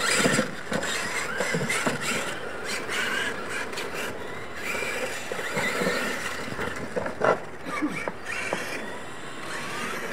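Two Losi LMT radio-controlled monster trucks racing on dirt: the electric motors and gear drivetrains whine under throttle, the tyres scrabble, and the chassis knocks and clatters over the ramps. A sharp, loud knock about seven seconds in.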